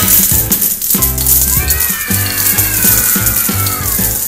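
A shower of coins jingling and rattling as a sound effect, with a falling tone sliding down through the second half. Bouncy background music with a steady beat plays under it.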